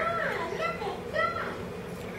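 A child's voice making three short high-pitched sounds that rise and fall in pitch, with no clear words.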